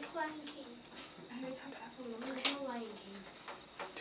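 A woman's voice talking softly, with no harp being played.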